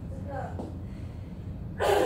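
A woman's voice: faint murmured words early, then a short, loud, breathy exclamation near the end, over a steady low room hum.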